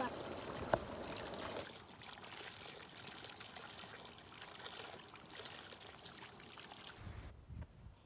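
Spring water pouring steadily from a split-bamboo spout and splashing onto cupped hands and the rocks below. It cuts off suddenly about a second before the end.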